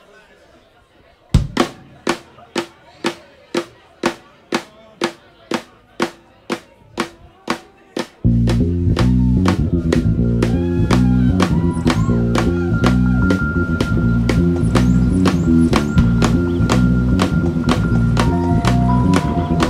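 Live jazz band opening a tune. A drum keeps a steady pulse of sharp strikes, about two a second, alone for several seconds. About eight seconds in, the full band comes in loudly with bass, electric keyboard and drums.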